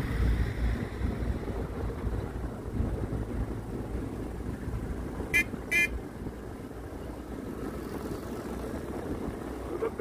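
A vehicle horn gives two short toots in quick succession about five seconds in, over the low, steady rumble of a moving road vehicle.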